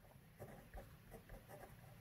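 Faint scratching of a ballpoint pen writing on paper, a quick run of short strokes.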